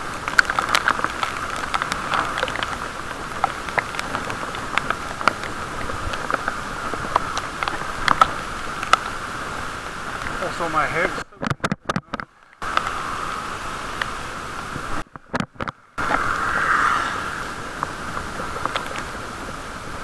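Muffled riding noise picked up by a camera sealed in a waterproof case on a bicycle in the rain: a steady dull rush with frequent small ticks. The sound cuts out briefly twice, about 11 and 15 seconds in.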